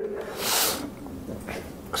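A man's short, sharp breath through the nose, a breathy hiss about half a second in.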